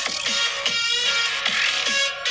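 Electronic dance music with a steady drum beat playing through an iPhone 12's built-in stereo loudspeakers, picked up by a mono microphone.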